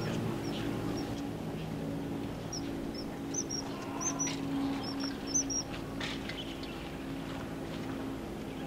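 Common kingfisher calling: a quick series of short, high, thin whistles through the middle few seconds. A steady low hum runs underneath.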